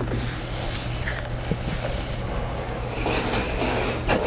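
A steady low hum in the background, with a few faint light clicks as the capacitor's wires and the multimeter test leads are handled.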